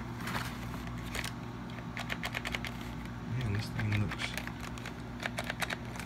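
Plastic Nerf Hyper blaster being handled and lifted out of its cardboard box: a scatter of light plastic clicks and taps over a steady low hum.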